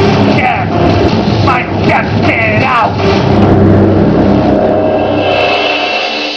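Electronic sampled interlude from an electro-industrial band's live PA: repeated rising, bending sweeps over a steady low drone. About three seconds in it gives way to a held synth chord.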